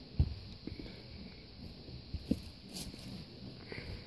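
Handling noise as a pair of sneakers is moved and set down on carpet: soft rustles and a few light knocks, the sharpest just after the start and another about halfway through.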